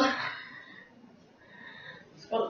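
A boy's short wordless vocal cry that trails off about half a second in.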